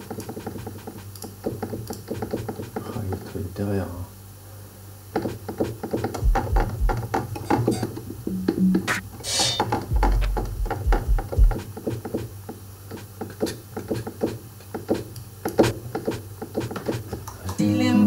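Electronic drum and percussion sounds played by hand from a keyboard: irregular sharp ticks and hits, with a few deep bass thumps about six and ten seconds in.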